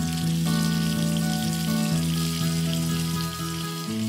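Water running from a waterfall-style bathtub spout into the tub, a steady splashing hiss.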